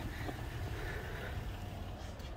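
Steady, low outdoor background noise with no distinct events.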